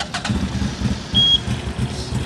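CFMoto CForce 800 XC's 800 cc V-twin engine starting from cold and running at a low idle, with a short high beep about a second in.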